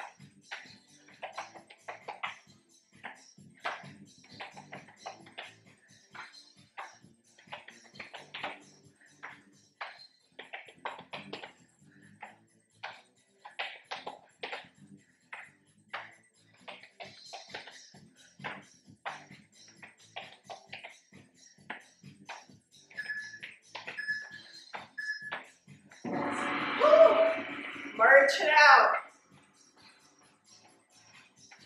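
Background music with a regular beat, mixed with soft taps and thuds from a burpee workout on an exercise mat. Near the end come three short beeps a second apart, then two loud bursts of voice.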